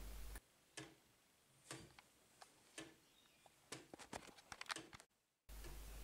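Near silence with the faint ticking of a hand-made wooden gear clock, roughly one tick a second, and a few closer-spaced clicks about four seconds in.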